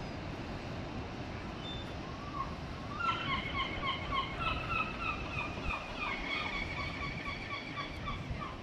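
A gull calling in a long, rapid series of short, harsh notes, about four a second, starting a couple of seconds in and going on to the end.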